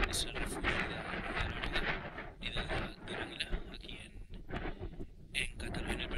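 Wind buffeting the microphone in gusts: a continuous low rumble and rush that rises and falls in loudness.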